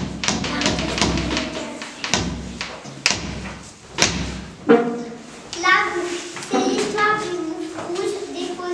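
A series of knocks and thumps over a low rumble for the first four seconds or so, then children's voices from about five seconds in.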